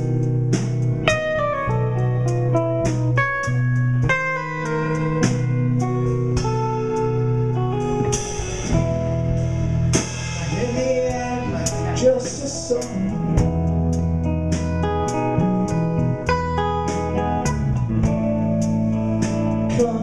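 Live rock band playing a slow instrumental passage: electric guitar lines ringing over held electric bass notes, with drums and cymbals. Singing comes back in just at the end.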